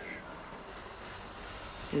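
Steady, low rushing background noise, like a distant engine, with no clear pitch or rhythm.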